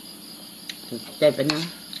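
Crickets chirring steadily in the background, a thin high continuous sound. A person speaks briefly over it a little after a second in.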